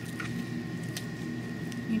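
Pruning snips cutting through thin chest-wall muscle of a dog specimen: a few faint, soft clicks and squishes spaced out over about two seconds, over a steady faint high hum.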